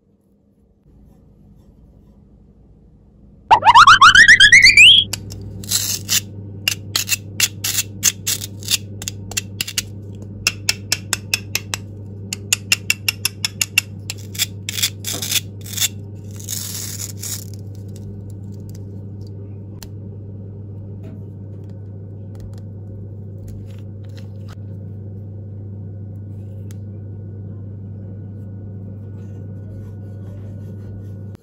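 A loud, fast-rising whistle-like sound effect, followed by a run of sharp clicks from a hard plastic grape-shaped toy being handled and pulled apart, over a steady low hum.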